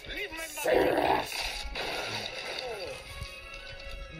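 Animated film soundtrack played through a tablet's speaker: music and a voice, with a loud crash about a second in as the house is smashed.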